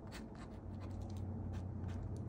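Fine-tip ink pen scratching on paper in a series of short, quick hatching strokes, over a steady low hum.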